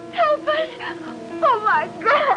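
A woman's high cries, falling in pitch, twice, as two women struggle, over steady instrumental music.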